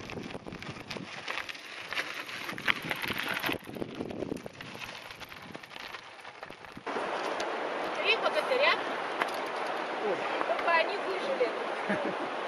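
Mountain bike tyres crunching over a loose gravel dirt track, with rattles and clicks from the bikes on the descent. About seven seconds in this cuts off suddenly to the steady rush of a mountain river.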